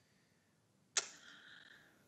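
A person's mouth click about a second in, then a breathy sigh that fades over about a second, drawn just before speaking.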